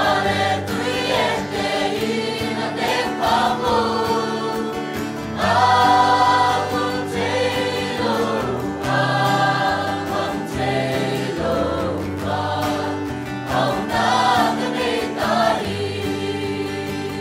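Mixed church choir of men and women singing a hymn in harmony, holding sustained chords; the voices swell loudest about five and a half seconds in.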